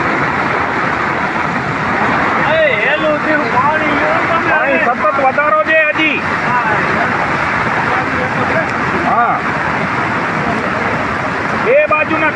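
Steady rush of fast floodwater pouring over a road bridge. People's voices call out over it a few times, a few seconds in and again near the middle.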